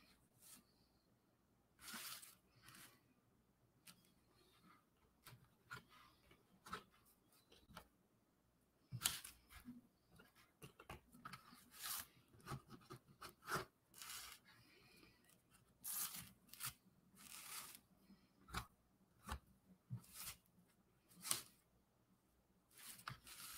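Faint, irregular scratching of a marker tip dragging short strokes across a cardboard drawing surface, with brief pauses between strokes.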